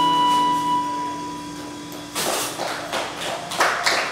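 The last chord of an acoustic and electric guitar duo rings out and fades. About halfway through, audience applause breaks out.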